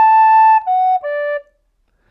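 Plastic soprano recorder played slowly, ending a phrase on three separately tongued notes stepping down: A held briefly, then F-sharp, then D, which stops about a second and a half in.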